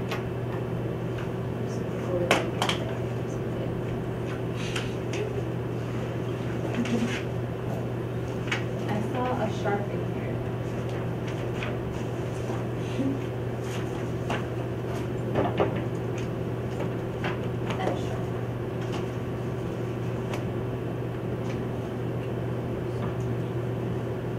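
Steady low room hum with scattered short clicks, taps and scrapes of a whiteboard marker and eraser working on the board.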